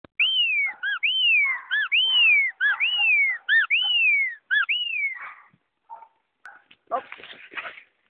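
A person whistling to call a dog: six long falling whistles alternating with short chirped ones over about five seconds. Near the end, a short burst of scuffing, rustling noise.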